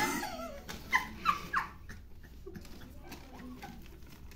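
A woman's short, high-pitched squeals of laughter, three quick ones about a second in, after a rustle of paper signs being flipped at the start.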